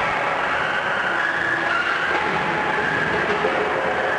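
Combat robots' electric drive and weapon motors whirring, a steady din with a faint high whine that drifts slightly in pitch.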